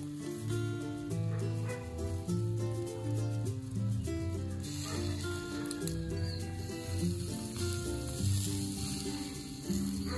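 Oiled pork belly sizzling and crackling over charcoal in a wire grill basket, the sizzle getting stronger about halfway through. Background music with a steady bass line plays throughout.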